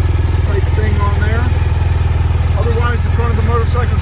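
BMW R 1200 GS Adventure boxer-twin engine idling steadily.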